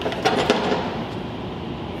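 A few light knocks in the first half second as a bare ZF 8HP50 automatic transmission case is shifted on a workbench, then a steady background hum.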